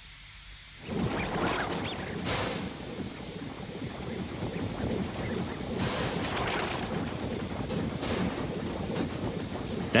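Sound effect of a big factory machine shaking and rumbling, starting about a second in, with surges of hiss on top. It is the sound of an overfilled mould-pumping engine.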